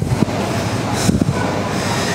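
Handling noise from a handheld camera's microphone as it is swung about: a continuous rumble with a few knocks, near the start and about a second in, over busy supermarket background noise.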